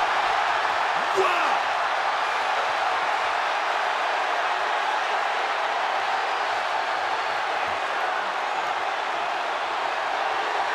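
Large arena crowd cheering in a steady, unbroken wall of voices, an excited reaction to a wrestling ring collapsing.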